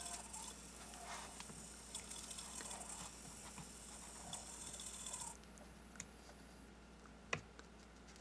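Faint clicks, taps and rustling of hands adjusting a small solenoid generator rig set in a clay base, with one sharper click a little after seven seconds. A faint high hiss cuts off about five seconds in.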